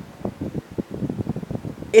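Air buffeting the microphone: a rapid, irregular run of soft low thuds, like a fan's draught or wind hitting the mic.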